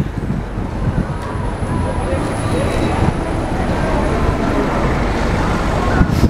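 Road traffic on a city street: cars driving past, engines and tyres on a wet road, building slowly as a car comes close near the end.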